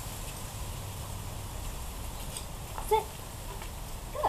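Steady low outdoor rumble, with one short pitched voice-like sound about three seconds in.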